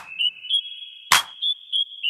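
Basketball shoes squeaking on a hardwood court in a quick string of short, high chirps, about four a second, with the ball bouncing sharply on the floor, once at the start and again about a second in.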